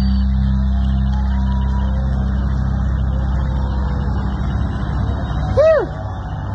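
A live rock band's amplified instruments holding a low sustained chord that wavers slightly and slowly fades. Near the end a short pitched sound swoops up and back down.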